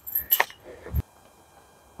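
Light metallic clinking from a disc golf basket's chains after the disc is lifted out, with a sharp click about half a second in and a short thump about a second in. Near silence follows.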